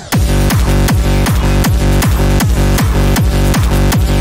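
Hard techno from a DJ mix: a fast, heavy kick drum comes in just after the start and pounds about three times a second, each hit dropping in pitch, over sustained synth tones.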